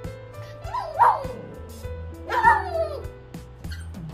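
Small dog giving two high-pitched yips about a second and a half apart, each falling in pitch, begging for food. Background music plays throughout.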